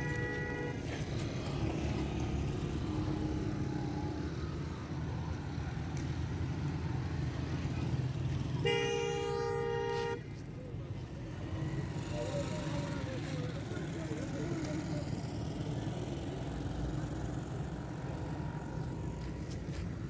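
Road traffic with a steady low engine rumble. A vehicle horn sounds briefly at the start, and a louder horn blast of about a second and a half comes just before the middle.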